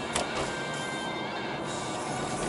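Music playing from the car radio, heard inside the cabin, with a single sharp click a fraction of a second in.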